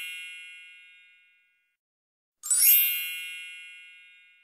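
Bright chime sound effect of an intro animation: one chime fades out over the first second and a half, and a second is struck about two and a half seconds in and rings down to near silence.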